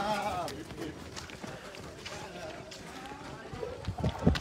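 Footsteps of a group of people jogging on a paved path, with a voice briefly at the start and faint chatter under the footfalls.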